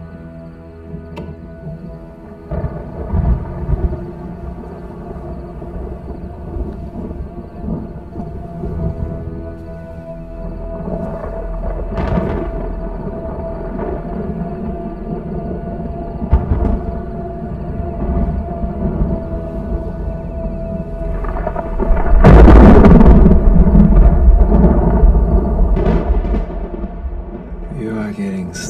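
Rolling thunder under a held, sustained music score. A sharp crack comes near the middle, and the loudest thunderclap breaks about three-quarters of the way through, rumbling on for several seconds.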